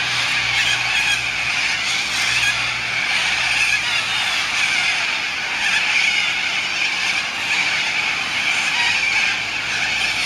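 A large flock of cockatoos screeching at once in a dense, unbroken chorus from the treetops, the evening gathering at their roost trees. A faint low hum sits under it for the first four seconds or so.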